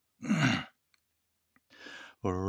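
A man's loud sigh out, the voice falling in pitch as it goes, then a short silence and a fainter breath drawn in near the end.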